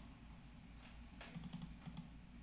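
Faint clicking of a computer keyboard: a short run of light keystrokes in the second half.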